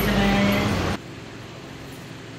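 A woman's voice holding out a word for about a second, cut off abruptly, then a steady low background hiss.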